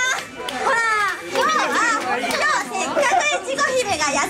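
Young women's high-pitched voices talking into stage microphones, with a short pause just after the start.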